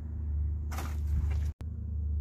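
A steady low rumble, with a brief rustle of items being handled a little under a second in. The sound cuts out for an instant about a second and a half in, at an edit.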